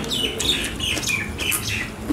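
A small bird chirping: a quick run of short, high notes, several a second.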